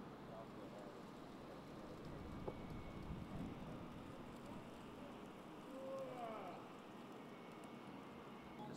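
Faint outdoor background hum with distant voices, one briefly audible about six seconds in, and a faint click about halfway.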